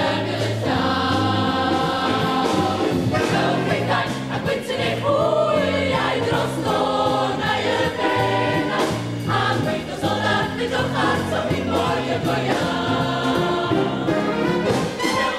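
Youth choir singing a Welsh song in full voice, with held notes over instrumental accompaniment and a bass line stepping from note to note.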